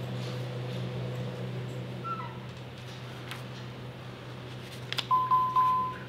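A steady low electrical hum in a quiet room. Near the end, a loud, single-pitch electronic beep sounds for about a second.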